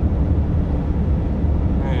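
Steady low rumble of engine and road noise inside a van's cabin while it is being driven.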